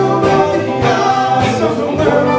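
Live band playing amplified: several voices singing in harmony over electric guitars, bass, keyboards and drums.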